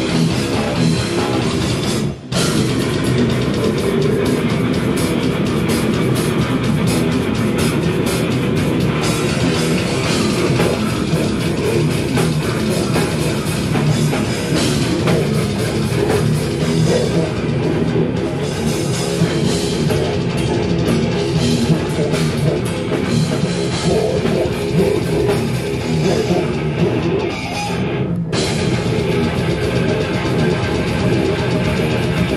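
Live death metal band playing with heavy electric guitars and a pounding drum kit at full volume. Everyone stops for a split second about two seconds in, then the song carries on.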